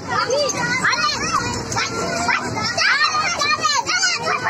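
Young children shouting, squealing and chattering over one another, with many high-pitched voices overlapping throughout.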